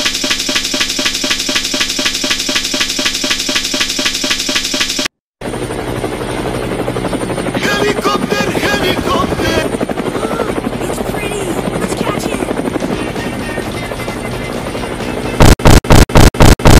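A music track with a steady beat cuts out after about five seconds. After it comes a cartoon clip's helicopter rotor noise with a voice shouting over it. Near the end, loud stuttering pulses, about five a second, repeat: the audio loops as the system crashes.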